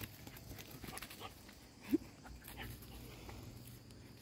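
A puppy moving over dry twigs and dirt, with faint rustles and small clicks, and one short rising whine about two seconds in.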